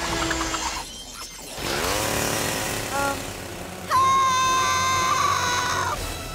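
Cartoon sound effects over music. A rising swoosh comes about two seconds in. From about four seconds a loud, steady, high whine starts suddenly: the buzz of the lizard monster's spinning saw blades.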